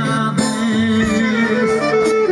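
Live Greek folk band playing an instrumental passage: a clarinet holds and bends long notes over a guitar and a drum kit.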